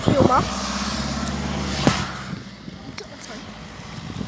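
A motor vehicle driving past on the road, a steady low engine hum with tyre noise that fades after about two seconds; a sharp click comes just before it fades.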